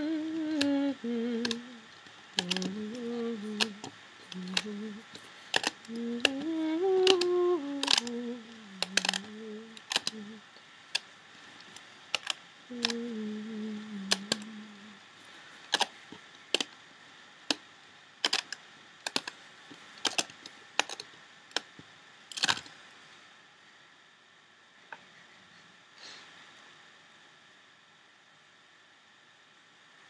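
A woman humming a wandering tune for about the first fifteen seconds. Over it come repeated sharp clicks and taps of rubber bands and hands against a plastic Rainbow Loom's pegs. The clicking thins out and stops a little over twenty seconds in.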